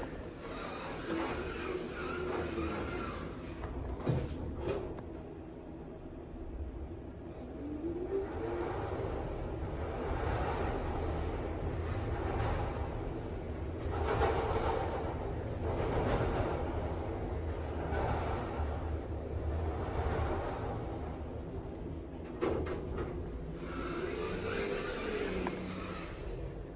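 Schindler 5500 elevator car travelling down: a steady low rumble of the ride, louder through the middle, with a hum that glides up and down in pitch as the car starts and slows. Single knocks about four seconds in and again near the end.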